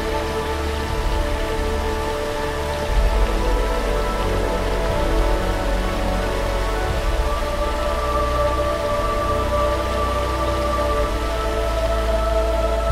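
Show soundtrack played over loudspeakers: held, ambient music tones over a very deep drone, mixed with a steady rain-like rush of water.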